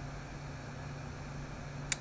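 Quiet room tone: a steady low hum with faint hiss, and one brief click close to the end.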